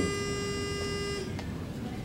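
A steady buzzing tone held at one pitch, with many overtones, that cuts off a little over a second in, followed by quiet room noise.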